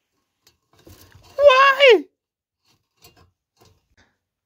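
A man's short wordless exclamation, a drawn-out 'huh'-like sound that rises and then falls in pitch, about one and a half seconds in, with a few faint clicks before and after it.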